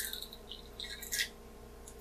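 Faint squish and drip of juice as a lemon half is pressed in a hand-held lever citrus squeezer, with a couple of brief hissy sounds in the middle.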